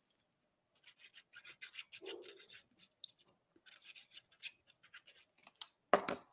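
Faint, irregular scratching and rubbing of a liquid glue bottle's tip drawn along a strip of patterned paper as a thin line of glue is laid down, in two stretches with a short pause about three seconds in.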